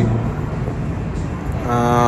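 Road traffic with a steady low rumble, and a short, steady pitched tone about one and a half seconds in.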